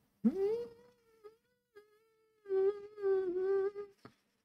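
A high, voice-like call: one note slides up and is held briefly, then after a pause a longer note is held at the same pitch with a slight wobble.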